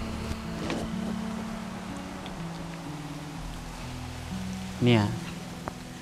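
Soft background music of sustained low held notes that move in steps every second or so. A short spoken word comes near the end.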